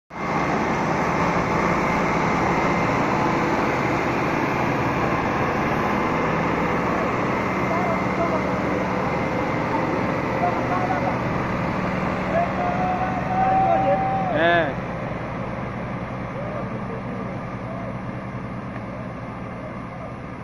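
Tractor diesel engines running under load as they haul a loaded trailer through deep mud, a loud steady drone. Near the middle, voices shout over the engines. The engine sound fades somewhat over the last few seconds as the tractors pull away.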